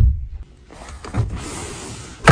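A thump of a hand patting a leather car seat cushion right at the start, then a small electric motor whirring steadily for about a second and a half, with a light knock shortly after it starts.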